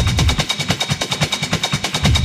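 Techno played over a club sound system, with the deep bass cut out for a moment: a fast, even rattle of drum hits carries on alone, and the full low end comes back in at the end.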